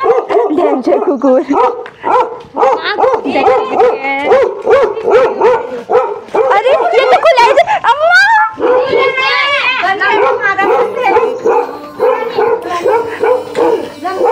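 A dog barking and yelping, with a rising whine or howl about halfway through, over people's voices.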